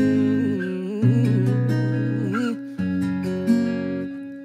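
Instrumental music with acoustic guitar chords that change about once a second. For the first two and a half seconds a wavering, wordless melody line runs over them.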